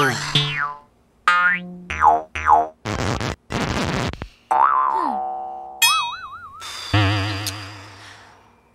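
A rapid string of short cartoon sound effects: boings and falling slide-whistle glides, two bursts of hiss, a whistle that rises and falls, and wobbling warbly tones near the end, each cut off abruptly. They change each time a button on a small novelty speaker is pressed.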